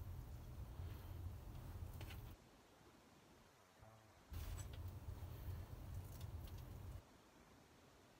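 Faint rustling and scratching of leek leaves being handled and pulled back by hand, over two spells of low rumble on the microphone, each two to three seconds long, that cut in and out abruptly.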